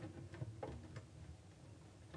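Faint, irregular clicks and knocks from handling equipment at a lectern, over quiet room tone.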